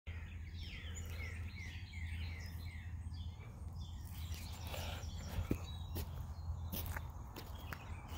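A songbird singing a run of about six repeated falling whistled notes in the first half, over a steady low outdoor rumble. In the second half a few sharp clicks and footsteps on dirt.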